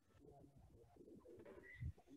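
Near silence: faint, low, muffled sound on a video-call line whose audio is cutting out, with a brief low thump near the end.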